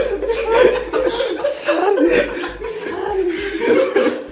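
A man chuckling and laughing in short, broken bursts, mixed with bits of speech.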